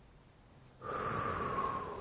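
A man's deep audible exhale, about a second long, starting a little before halfway in, breathed out as he rounds his back in a cat-cow stretch.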